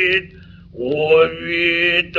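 Solo male Noh chant (utai) in the Hōshō style, from a 1933 gramophone record: a held, wavering note breaks off, a short pause leaves only the record's steady surface noise, and a new long note begins about three-quarters of a second in.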